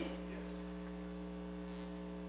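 Steady electrical mains hum: a few low, unchanging tones, with nothing else happening.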